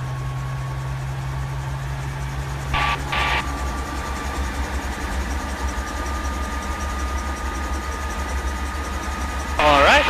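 A 1957 Bell 47 G-2 helicopter's piston engine and main rotor running steadily at operating RPM on the ground, a low pulsing drone with a steady whine over it. Two brief hisses come about three seconds in.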